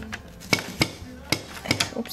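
Zutter Bind-It-All binding punch being worked by hand: about six sharp plastic clacks and knocks as its handle is pushed and released to punch holes in a sheet of paper.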